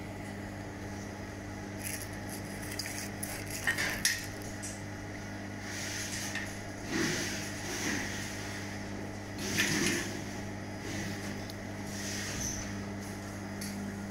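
Steady low electrical hum from a running laser welding and cleaning machine, with irregular metallic clinks and knocks from handling the handheld laser torch and its nozzle.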